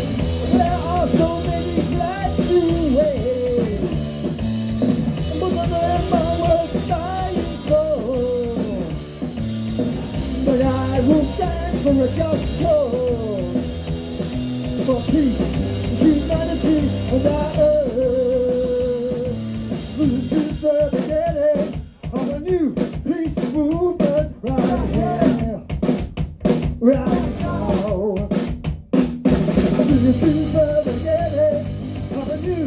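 Anarcho-punk band playing live: electric guitar, bass guitar and drum kit under a sung vocal line. About twenty seconds in the drums come to the fore with hard, choppy hits and a momentary break.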